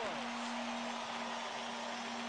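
Arena goal horn sounding one steady low note over a cheering crowd, the signal of a home-team goal.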